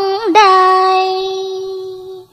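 A high solo singing voice sings a short ornamented phrase, then holds one long steady note that slowly fades toward the end.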